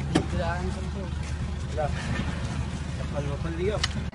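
A vehicle engine running steadily at idle, a low rumble under people's voices, with a sharp click just after the start and another near the end.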